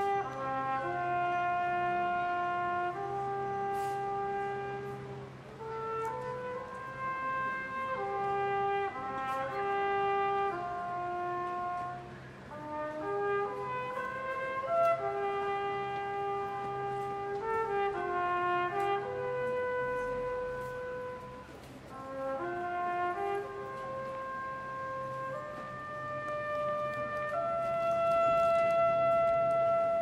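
A solo trumpet-family horn plays a slow, singing melody of held notes over a soft, sustained wind-band accompaniment. The phrases ease off twice, and near the end the horn swells into a long held note.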